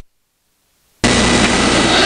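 Dead silence for about a second at an edit, then a sudden, steady hiss with a low hum underneath: the recording's own background noise between narrated passages.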